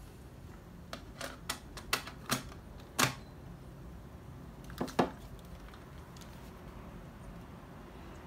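Plastic clicks and clacks of a Sony TCM-150 handheld cassette recorder as a cassette is loaded and the door shut: about six sharp clicks over the first three seconds, the loudest just after three seconds in, then a quick pair of clicks about five seconds in.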